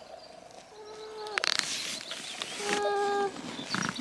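A stroller squeaking as it is pushed: three drawn-out, even squeaks of a single pitch, about two seconds apart, with short fabric rustles between them.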